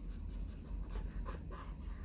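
Felt-tip marker tapping and scratching on paper in a run of short, irregular dabs.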